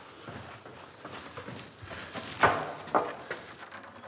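Footsteps on concrete stairs with a few knocks of a wooden board being carried and set down, the two loudest about halfway through, half a second apart.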